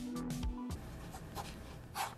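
Pen scribbling on paper, over quiet background music.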